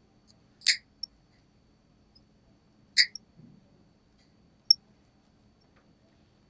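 Toenail nippers cutting through a thick toenail damaged by psoriasis and fungus: two sharp snaps a little over two seconds apart, with a couple of faint ticks between.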